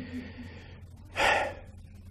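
A man's short, audible inhale close to a microphone, about a second in, taken in a pause between phrases of speech.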